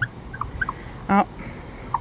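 A terry towel rubbing on car window glass, with a few faint short squeaks early on; a woman exclaims a short 'oh' about a second in.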